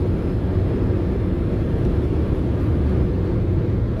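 Steady low rumble of road and engine noise inside the cab of a cargo vehicle cruising at motorway speed.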